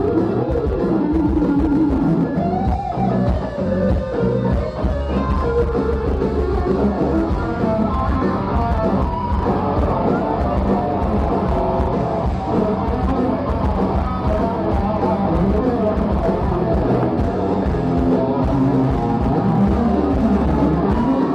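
Live rock band playing loud: distorted electric guitar with a gliding lead line over drums and bass.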